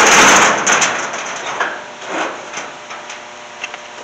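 A sheet-metal equipment-building door pushed shut: a loud clang right at the start that dies away over about a second, then a few lighter knocks and clanks as it settles and is latched.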